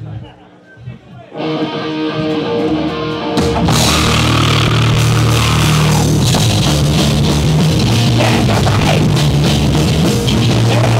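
Punk/thrash band playing live through amplifiers: electric guitar holding ringing notes, then about three and a half seconds in the drums, bass and distorted guitars come in together, loud and fast.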